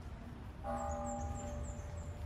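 A bell struck once about a third of the way in, its mixed tones ringing on for about a second before fading. Faint, quick high-pitched bird chirps and a low outdoor rumble run underneath.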